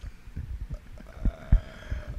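Microphone handling noise: a run of soft, low thumps and bumps, the loudest two about a second and a half in.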